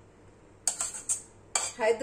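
Steel serving spoon knocking against the pan and serving bowl as thick curry is spooned out: about four sharp clinks in the second half.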